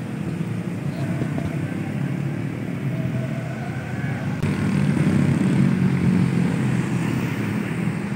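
Road traffic going by: a steady low rumble of car and motorcycle engines and tyres, getting a little louder about halfway through as vehicles pass close.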